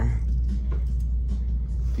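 Steady low rumble with faint background noise.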